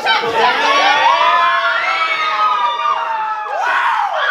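A group of young people cheering and whooping together, several voices holding long shouts that slide up and down over each other, with a fresh burst of shouting near the end.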